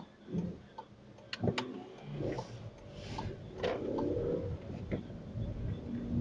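Car cabin sound of a car pulling away from a standstill: a low engine and tyre rumble builds from about two seconds in. A few scattered sharp clicks sound over it.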